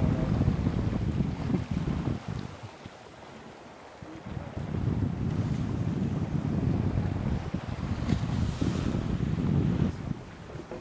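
Wind buffeting the microphone over the rush of water along the hull of a Volvo Ocean 65 racing yacht under sail. The gusts ease for about two seconds a couple of seconds in, then pick up again.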